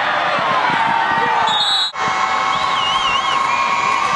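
Football crowd in the stands cheering and shouting, many voices overlapping, with a brief dropout just before halfway through.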